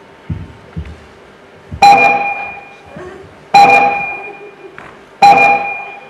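A bell-like chime dings three times, about one and a half to two seconds apart, each ding sharp at the start and ringing away over about a second.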